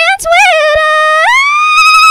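A woman singing unaccompanied in a high voice: a few short notes, then a long held note that jumps up to a higher long held note with vibrato just past halfway.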